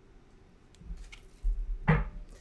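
A deck of tarot cards being handled and shuffled by hand, with soft low thumps and a sharper tap near the end, after a quiet first second.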